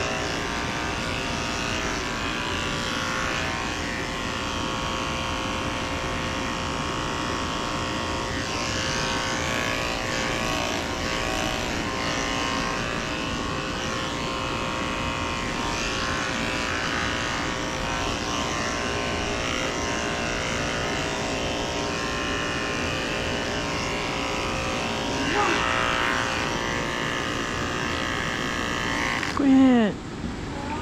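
Corded electric dog clipper running steadily with a constant hum as it is worked through a poodle's coat. It cuts off abruptly near the end.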